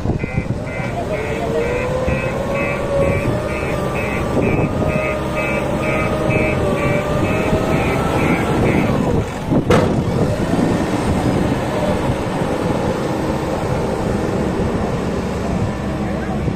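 JCB 3DX backhoe loader's diesel engine running hard under load in thick mud, with a slowly rising whine. For the first half there is a high warning beeper sounding about twice a second, and one sharp knock comes a little after the beeping stops.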